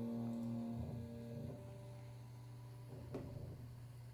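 Soft keyboard music: held piano chords over a pulsing low note. The chords fade out about a second in, leaving a low hum, with a faint knock about three seconds in.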